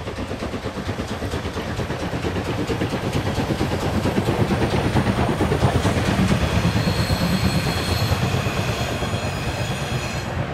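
Steam locomotive hauling a train of passenger coaches past at speed, its rapid chuffing mixed with the wheels clattering over the rail joints as the coaches roll by, loudest about halfway through. A thin high squeal from the wheels comes in over the second half.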